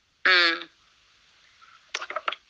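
A man's voice making one short drawn-out syllable lasting about half a second, followed by faint hiss and a few soft clicks near the end.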